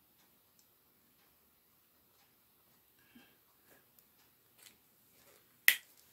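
Very quiet, with faint soft strokes of a watercolour brush pen on sketchbook paper, then a single sharp plastic click near the end as the brush pen is put away.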